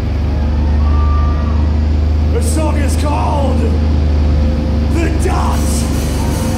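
A man's voice through the PA in a few short phrases, over a loud, steady low hum from the stage amplifiers.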